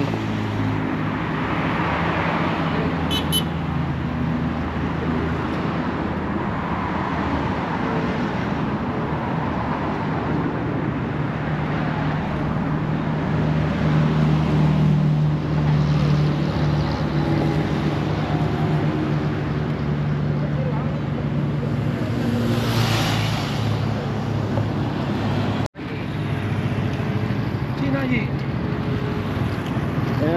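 Road traffic on a multi-lane highway: cars and a motorcycle passing close by, a steady hum of engines and tyres that swells as each vehicle goes past. The sound drops out for an instant about three-quarters of the way through.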